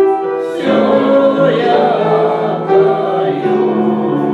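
Several voices singing a slow church hymn in long held notes, a new phrase starting about half a second in.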